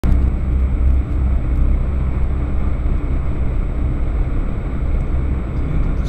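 Suzuki Alto driving along a road, heard from inside the cabin: a steady rumble of engine and tyre noise, strongest in the low end.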